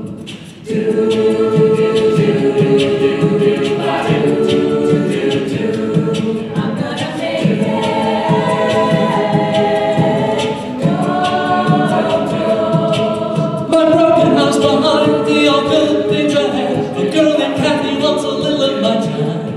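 Mixed-voice a cappella group singing close, sustained harmonies over a steady percussive beat, with a brief drop in the sound just under a second in before the full chord comes back.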